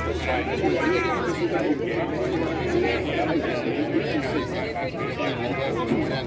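Spectators in a ballpark grandstand chatting, several voices talking over one another with no single clear speaker.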